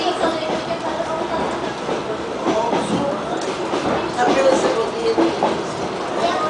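DR1A diesel multiple unit running along the line, heard from inside the carriage, with passengers' voices in the background.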